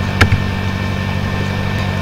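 Steady low electrical hum and hiss of the recording's background noise, with one sharp click about a quarter second in.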